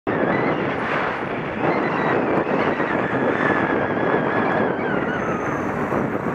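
Wind rushing over a bike-mounted camera's microphone while cycling along a road, mixed with road and traffic noise. A faint steady whine sits underneath and dips slightly lower near the end.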